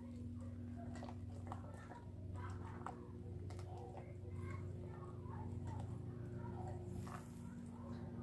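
Silicone spatula stirring a thick melted soap mixture in a stainless steel bowl: faint scraping with scattered light clicks against the metal, over a steady low hum.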